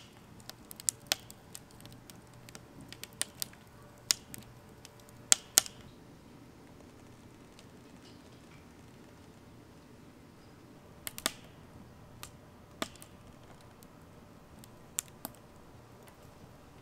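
Wood fire crackling in a Solo Stove Bonfire stainless-steel fire pit: sharp, irregular pops at uneven intervals, with the loudest pairs about a third of the way in and again about two-thirds through.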